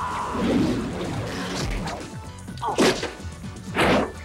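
Fight-scene hit sound effects over background music: two loud whacks, the second near the end the loudest.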